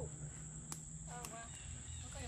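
A steady high-pitched insect drone in the woods, with faint distant voices about a second in and a single light click.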